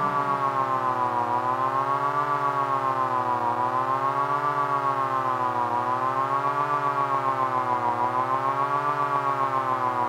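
A siren-like electronic drone in an experimental track: one buzzy held tone that rises and falls slightly in pitch about every two seconds, with a fast pulsing flutter, and no drums.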